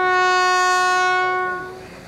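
A bugle sounding a call for a funeral salute: one long held note that fades out about a second and a half in.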